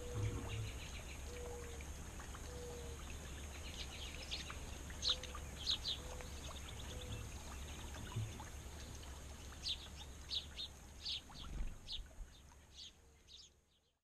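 Wild songbirds chirping and calling at a backyard feeder, in quick runs of short high chirps about five and again ten to thirteen seconds in, with a repeated short low whistled note and a steady low background rumble; the sound fades out at the end.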